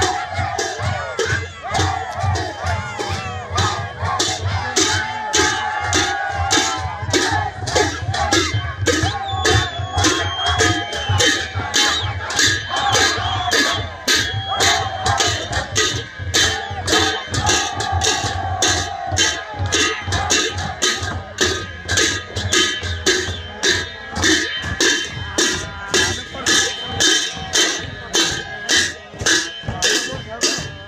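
A drum beaten in a steady rhythm of about three beats a second, with a crowd of voices calling and singing over it. The voices thin out in the second half, leaving the drumbeat more to the fore.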